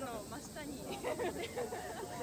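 People's voices talking, with a steady faint hiss underneath.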